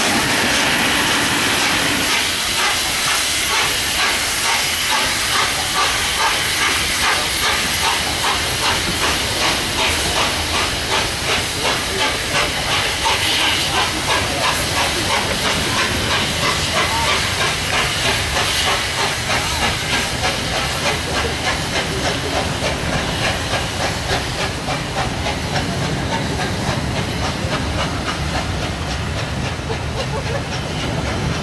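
Peppercorn A1 Pacific 60163 Tornado's three-cylinder steam exhaust beating as it pulls its train away, the beats quickening as it gathers speed, over a steady hiss of steam. Its coaches then roll past.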